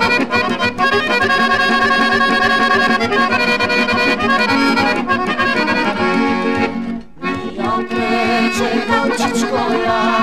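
Instrumental passage of a 1963 Macedonian folk song recording, led by accordion over a steady beat. The music drops out briefly about seven seconds in, then picks up again.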